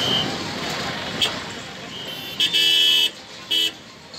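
A vehicle horn honks twice over street noise: a longer blast about two and a half seconds in, then a short one half a second later.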